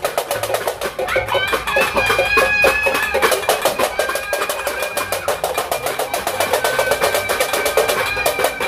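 Aluminium cooking pots and lids beaten together in a rapid, continuous metallic clatter, the noisemaking that welcomes the New Year. A clear metallic ringing rises out of the clatter about a second in.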